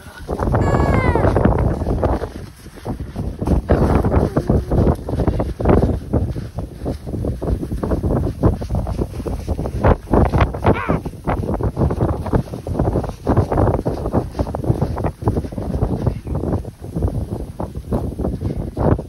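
Wind buffeting the phone microphone in heavy, uneven gusts, with irregular crunches and rustles as the otter is handled in the snow. A short falling squeak about half a second in.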